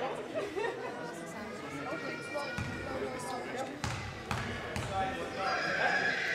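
A basketball bouncing on an indoor sports-hall floor, four bounces in the second half, the last three about half a second apart: a shooter's dribbles before a free throw. Voices echo in the hall.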